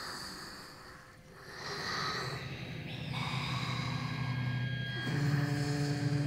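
Breathy, snort-like noises on a recorded stage performance, then about five seconds in a sustained low chord of music sets in and swells.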